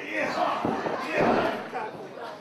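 Kicks landing with sharp impacts on a wrestler slumped in the corner of a wrestling ring, among shouting voices.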